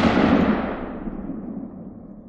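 Echoing tail of a single loud blast, dying away steadily.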